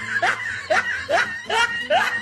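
A woman laughing in a string of short, rising chuckles, about two a second.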